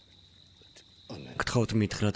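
A faint steady chirring of crickets, then a man starts speaking about a second in; his voice is the loudest thing.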